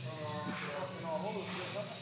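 Indistinct voice sounds over a steady low hum.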